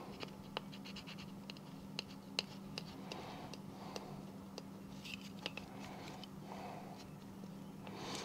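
Faint scratching and rubbing of fingertips pressing a vinyl stencil down onto a plastic disc, with scattered small ticks, over a low steady hum.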